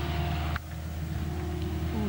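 Tracked excavator's engine running steadily as it digs, dropping suddenly in level about half a second in and carrying on more quietly.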